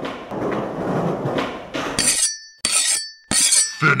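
About two seconds of noisy clatter, then three sharp crashes about half a second apart, each with a brief ringing.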